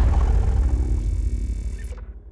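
A tiger roar sound effect: a deep, pulsing growl that fades out toward the end.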